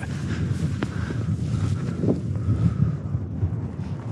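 Wind buffeting the microphone: a continuous, uneven low rumble, with a single faint click just under a second in.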